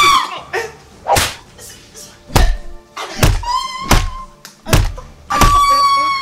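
Blows landing on a person with dull thuds, about seven in quick succession, and a woman crying out between them, with a long held cry near the end.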